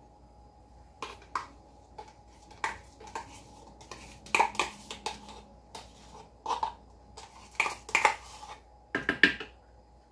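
A spoon scraping and knocking in a small plastic cup while thick homemade yogurt is spooned into it to fill it: a run of short, irregular clinks and scrapes, loudest around the middle and near the end.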